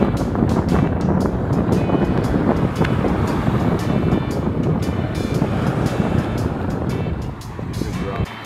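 Wind buffeting the microphone: a steady low rumble with crackling, easing near the end.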